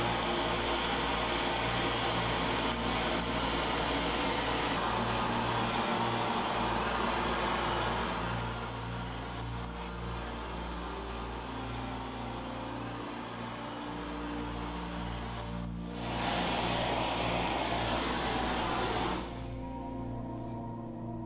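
Steady hiss of a gas torch flame played over thin copper foil, with background music of sustained low notes underneath. The hiss drops away near the end, leaving only the music.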